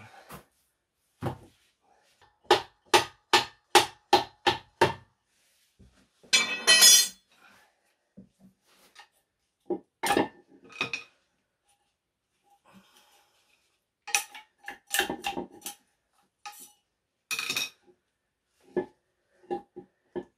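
Steel-on-steel knocking and clanking as a pry bar levers at a BMW rear differential's output flange: a quick run of about eight sharp ringing strikes in the first five seconds, a louder, longer grating clatter around seven seconds in, then scattered knocks and clinks.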